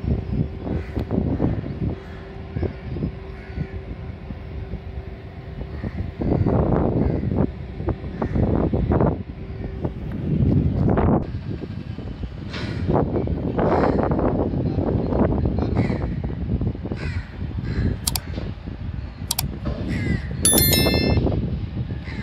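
Wind gusting against the microphone in uneven surges, with birds calling a few times, most clearly near the end.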